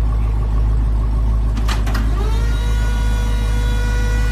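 Supercharged V8 of a Dodge Challenger SRT Demon idling with a low, steady rumble as the car is unloaded down a car-hauler ramp. Two short knocks come a little before halfway, and just after them a steady high whine rises and holds to the end.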